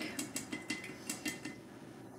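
Metal mesh tea brewing basket shaken against the rim of a glass mason jar: a quick run of light clinks over about a second and a half, dying away.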